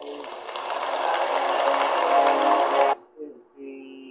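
Audience applause with music playing over it at the end of a keynote, cutting off suddenly about three seconds in.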